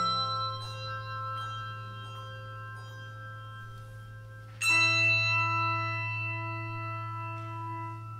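Handbell choir ringing. Scattered bell notes sound over a held low note, then about two-thirds of the way in a loud full chord is struck together and left to ring.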